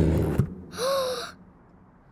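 The deep call of a cartoon dinosaur fades out in the first half-second. About a second in comes a short gasp-like voice, its pitch rising and falling, and then it goes nearly quiet.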